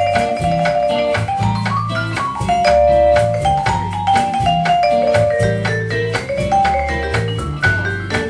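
Live band playing an instrumental passage without vocals: a lead melody of held notes over a repeating bass line and a steady beat, with a quick rising run of notes about a second and a half in.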